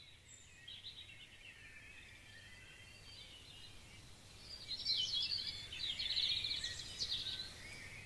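Birdsong: several birds chirping and trilling at once, growing busier and louder about halfway through.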